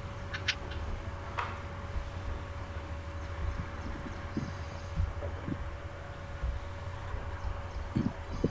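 Background noise through open microphones on a video call: a steady low rumble and a thin constant hum, with a few short clicks and brief high chirps in the first second and a half and faint scattered knocks after.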